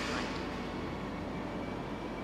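Steady background noise from the neighbouring warehouse, picked up by a sensitive handheld microphone; it is put down to packing tape being used next door.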